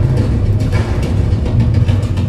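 Loud, deep bass rumble from a cinematic promo soundtrack, played over a large hall's sound system, with a few soft percussive hits.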